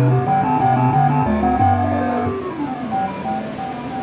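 A PDP-1 computer playing four-part music synthesized in real time, its four voices (soprano, alto, tenor and bass) made by switching the machine's program flags on and off under software control and sent through an amplifier and speakers. Stepped notes over a bass line, with a falling run of notes in the middle; the music thins out and gets a little quieter near the end.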